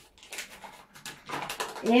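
A small packet, apparently a sachet of baking ingredient, crinkling in the hands as it is handled and opened over a plastic bowl, in a run of irregular soft crackles.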